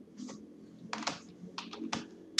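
Computer keyboard keystrokes: a few separate, irregularly spaced key presses, a word being typed.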